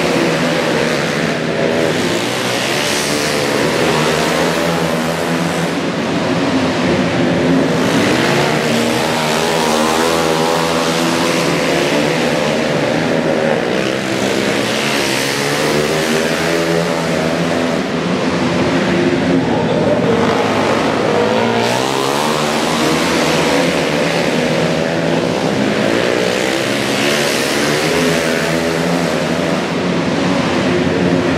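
Several 450cc four-stroke single-cylinder flat-track motorcycles racing together, their engines overlapping and repeatedly rising and falling in pitch as riders roll off for the turns and get back on the throttle.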